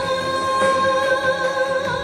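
A woman singing into a handheld microphone, holding one long steady note.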